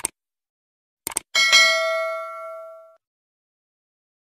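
Subscribe-button animation sound effect: a click, a quick double click about a second in, then a bright notification-bell ding that rings out and fades over about a second and a half.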